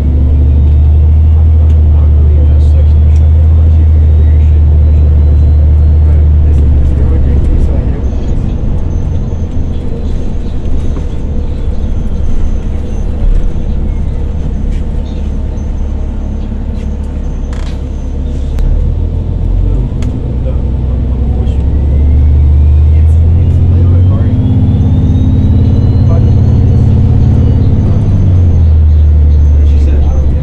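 Onboard sound of a 2013 New Flyer XDE40 hybrid bus (Cummins ISB6.7 diesel with BAE Systems HybriDrive) under way. A deep engine drone is loud at first, eases off through the middle and comes back strongly after about 22 seconds. Twice, a thin whine climbs in pitch as the bus picks up speed, and rattles and clicks from the bus body come through, one sharp click near the middle.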